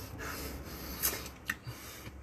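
Rubbing and rustling as fingerless training gloves are handled close to the microphone, with two short scratchy noises about a second and a second and a half in.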